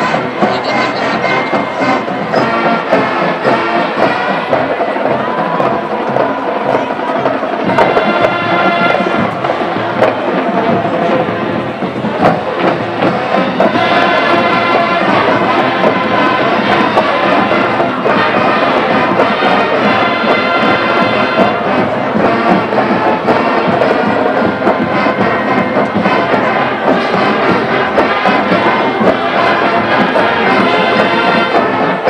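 Band music with brass and percussion playing steadily through the break between quarters, over crowd noise in the stands.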